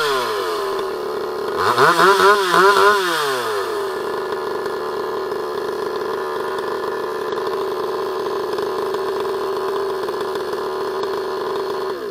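Demon CS 58T 55 cc two-stroke chainsaw, still being run in, held clear of the wood: the throttle is blipped a few times in quick succession about two seconds in, then the engine settles into a steady idle.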